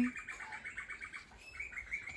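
A bird's rapid trill, about ten even notes a second, with a few separate chirps near the end.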